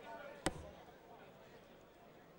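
A single dart thudding into a bristle dartboard about half a second in, over a faint background of the hall.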